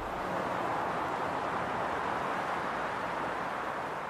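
Steady rushing noise of distant city traffic, an even hum without distinct engines or horns, fading in just before and out just after.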